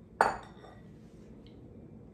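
A glass bowl set down on a hard countertop: one sharp clink with a short ring about a quarter second in, then a faint tick a little past halfway.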